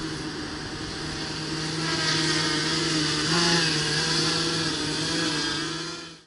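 Small tricopter's electric motors and propellers running with a steady hum and whine, getting louder and higher about two seconds in as the throttle comes up, with a brief wobble in pitch a little after three seconds.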